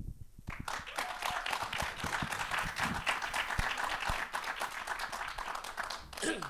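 Audience applause: many people clapping, beginning about half a second in and going on steadily.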